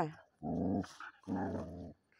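A dog growling twice, two low, rough growls of about half a second each.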